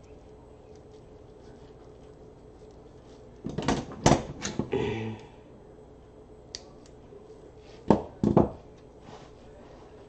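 Handling noise from a wire wreath frame and deco mesh as a pipe cleaner is twisted on: a cluster of short rustles and knocks about halfway through, and a second pair of sharp knocks near the end.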